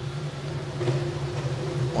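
Steady low hum of a swimming venue's background noise, with a faint murmur over it.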